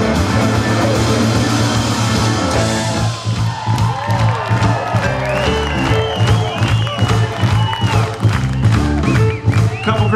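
Live electric blues band playing a grooving number with electric guitars, bass and drums. About three seconds in the dense full-band sound thins out, and a lead line of bent and held high notes plays over the steady bass and drums.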